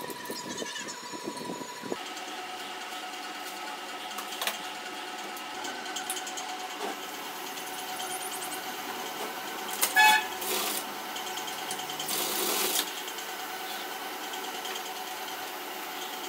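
Scissors cutting fabric for the first two seconds, then the steady hum of an industrial sewing machine's motor running. About ten seconds in comes a short honk-like tone, the loudest sound, and just after it a brief noisy burst of under a second.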